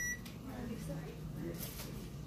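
A single short, high electronic beep at the very start, then low murmuring voices.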